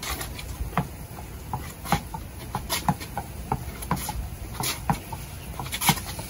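Tennis ball being hit repeatedly with a racket against a wall in a short rally: sharp pops of the ball off the strings and the wall, about two to three a second at an uneven beat.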